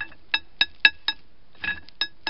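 Light hammer taps on a steel axle shaft, about four a second with a brief pause, each leaving a short high metallic ring.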